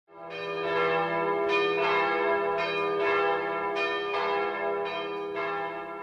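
Bells ringing in a series of strikes about every half second, each note ringing on under the next. The sound fades in at the start.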